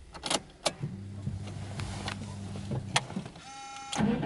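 Subaru Impreza WRX STi's ignition being switched on before start-up: a few sharp clicks, then a low steady electric hum for about two seconds, typical of the fuel pump priming, and a short high tone near the end.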